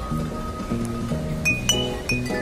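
Bottle piano: hanging glass bottles tuned with water, struck to ring out a quick melody of clear glassy notes over a steady low bass line.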